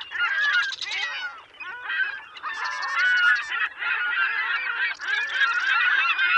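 A flock of geese honking, many calls overlapping in a continuous chorus.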